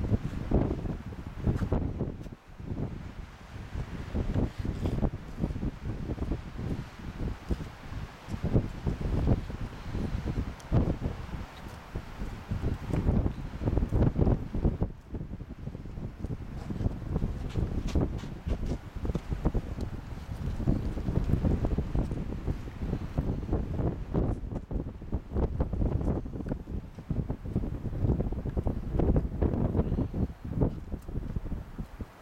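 Wind buffeting the camera's microphone in uneven gusts, a low rumbling that rises and falls.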